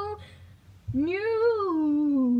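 A boy singing a news-jingle tune: a held note cuts off just after the start, and about a second in he sings one long note that slides up and then slowly down.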